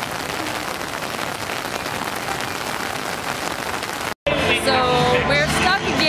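Heavy rain falling on a flooded stone walkway, a steady hiss of drops on standing water. About four seconds in it cuts off abruptly and is replaced by music with a singing voice.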